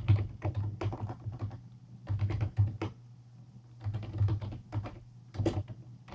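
Computer keyboard typing: several short runs of quick keystrokes with brief pauses between them.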